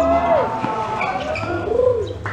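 A dove cooing: two short arched coos, one at the start and one near the end, over faint voices.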